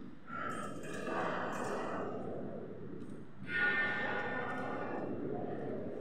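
Reverberant room tone of a large stone cathedral interior, with faint, indistinct voices of other visitors echoing in the nave.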